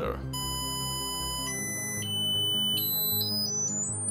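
Piezoelectric buzzer disc driven by a signal generator's square wave, sounding a shrill steady beep that steps up in pitch as the frequency is dialled up. It starts a moment in, jumps up about every half second, then climbs in quicker steps near the end.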